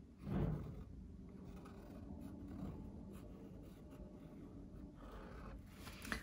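Faint scratching of a black fine-liner pen drawing short strokes on cold-press watercolour paper as leaf outlines are inked, with a brief louder bump about half a second in.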